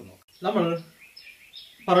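A man speaks a short word, then in a pause of about a second small birds chirp faintly in the background. Speech resumes near the end.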